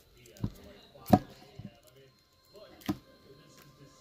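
Stacks of plastic-sleeved trading cards being handled and set down on a table: three sharp clacks, the loudest about a second in, with faint rustling between them.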